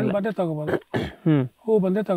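Only speech: a man talking in short phrases.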